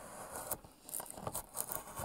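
Hand carving chisel cutting into wood, a quick series of short sharp cuts and scrapes as notches are carved along a wooden door handle.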